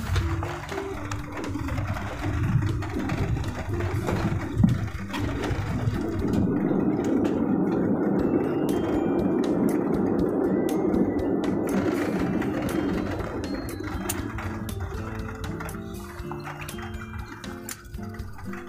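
Airliner cabin noise on the landing roll, spoilers up: a rushing engine and runway noise that swells to its loudest in the middle as reverse thrust is applied, then dies away as the aircraft slows. Background guitar music comes back through it near the end.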